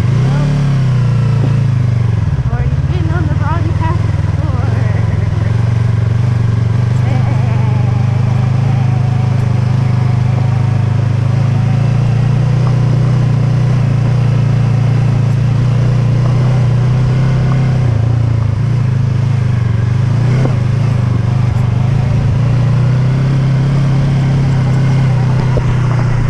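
Yamaha YZF-R3's parallel-twin engine running steadily at low road speed on gravel. The engine note dips briefly about two seconds in and again near the end of the ride shown.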